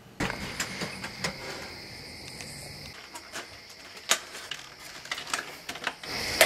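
A computer's disc drive burning a CD: irregular mechanical clicks and ticks over a faint, steady high whine.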